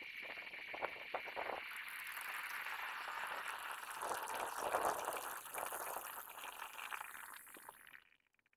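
A freshly cast aluminum bronze ingot being quenched in a bucket of water: a few crackles, then a steady hiss of boiling water that swells and fades as steam comes off.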